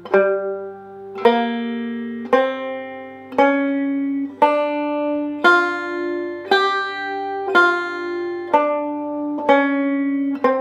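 Five-string banjo picking the G blues scale slowly, one note at a time, about one note a second, each note ringing and fading before the next.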